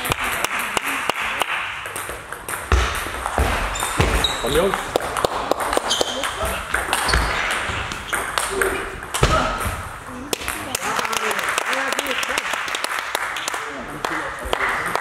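Table tennis ball clicking off the bats and the table in a rally of quick, sharp ticks.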